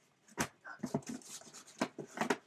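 Stacks of old comics and a cardboard box being handled: a sharp knock about half a second in, then shuffling and rustling of paper and card, and another knock near the end.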